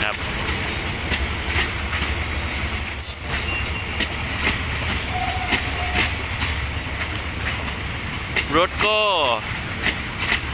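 Passenger coaches of a diesel-hauled express train rolling past: a steady low rumble with repeated clacks of the wheels over the rail joints.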